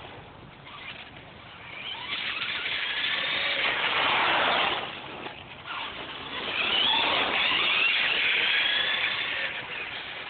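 Traxxas Stampede VXL radio-controlled truck's brushless electric motor whining as it drives on asphalt, its pitch rising and falling with speed. It is loudest twice: from about three seconds in, and again from about six and a half seconds.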